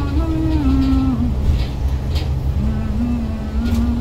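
A woman's voice holding a slow melody in long sustained notes, with a pause about a second in before the next long note begins, over the steady low rumble of a moving bus's engine and road noise heard from inside the cabin.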